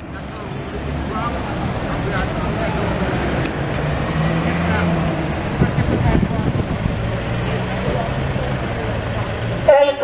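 Street traffic: vehicle engines running with a steady low hum that rises and falls, under faint background voices. A loud voice breaks in just before the end.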